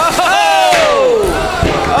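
A man's long, excited yell that slides down in pitch, followed near the end by a short shouted "oh". It is the commentator reacting to the opening clash of a combat-robot fight.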